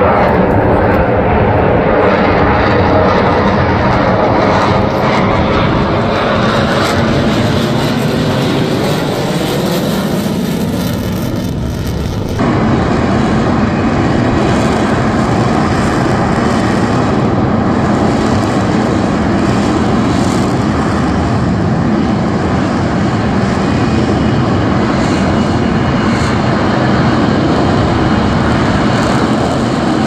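Jet engine of an F-35B Lightning II: for the first twelve seconds a jet flying past with a whooshing sound that sweeps in tone as it moves, then after a sudden cut, the steady loud jet noise of the F-35B hovering over the runway on vertical thrust.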